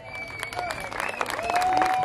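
Audience applauding, with the clapping growing denser and louder through the second half, and a few long held pitched tones sounding over it.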